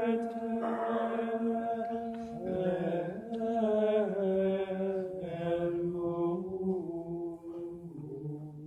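Latin plainchant of the Tridentine Mass, sung as a single unaccompanied line of long held notes that move up and down by small steps.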